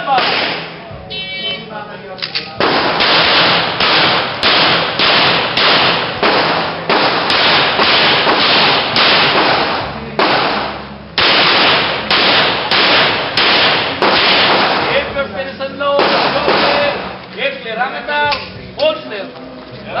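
A shot timer beeps about a second in. Then comes a string of rapid pistol shots, a fraction of a second apart, with a break of about a second near the middle, and a last few shots later on.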